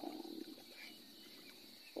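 A voice trails off within the first half second, then faint, quiet background with a steady high-pitched hum.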